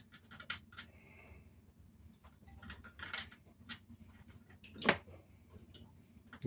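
Small open-end spanner clicking and scraping on a brass temperature sensor as it is turned by hand into a threaded port on the engine, with a sharper metal click about five seconds in.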